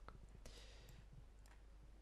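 Near silence with a few faint, sharp clicks from a laptop as a query is selected and run.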